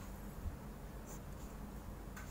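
Faint scratching of a ballpoint pen on paper as short strokes are drawn, with one small tap of the pen about half a second in.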